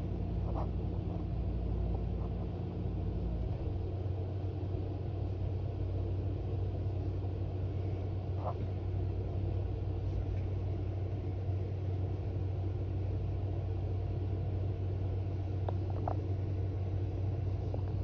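Amazon Prime delivery van's engine running with a steady low rumble as the van turns around.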